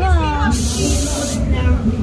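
A burst of hissing noise, just under a second long, starting about half a second in, over people talking and a steady low hum.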